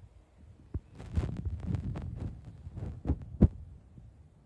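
Footsteps and the rustle of clothing as a man walks: a run of low, irregular thumps and rustles, with one sharp knock near the end.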